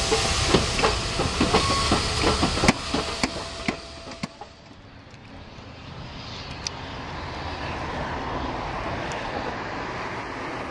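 NSWGR 59 class steam locomotive 5910 and its carriage rolling slowly past close by: irregular clicks and knocks from the wheels and running gear over a hiss of escaping steam, dying away about four seconds in. After that a steady rushing sound grows gradually louder as a double-headed steam train approaches from a distance.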